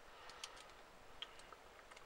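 A few faint clicks of a plastic Transformers PowerCore Combiners Leadfoot figure's parts being turned and fitted by hand, over near silence.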